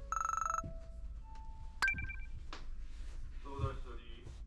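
A short electronic ringing tone that trills rapidly for about half a second. A few single held tones and a sharp click follow, and a voice begins near the end.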